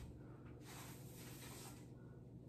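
Near silence: small-room tone with a faint steady low hum and a faint soft hiss in the middle.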